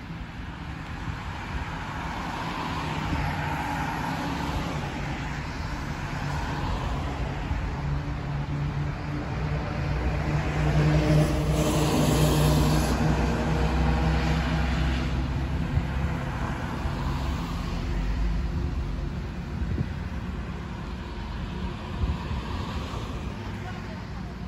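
Road traffic passing close by on a city street: vehicles swell and fade, and a city bus drives past around the middle, its engine hum and tyre noise building to the loudest point and then dying away.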